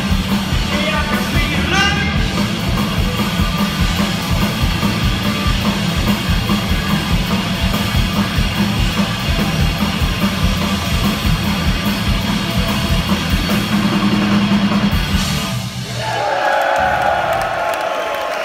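Live punk rock band, with distorted electric guitar, bass and drum kit, playing loudly through a PA. About 16 seconds in the song ends and crowd cheering follows.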